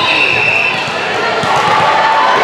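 Busy indoor volleyball gym ambience: overlapping voices of players and spectators with repeated thuds of balls bouncing and being hit on the courts. A brief high-pitched tone sounds early on.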